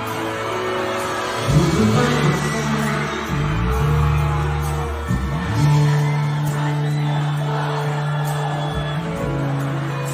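Live band music at a concert, loud and steady, with sustained bass notes that shift every second or two, over a crowd cheering and whooping.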